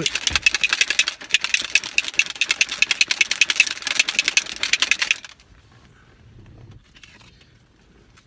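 A protein shaker bottle holding whey protein powder and almond milk being shaken hard to mix a shake: a fast, even run of sloshing rattles that stops suddenly about five seconds in.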